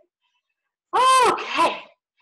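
A woman's short, high-pitched vocal sound about a second in. It rises then falls in pitch and ends in a breathy burst.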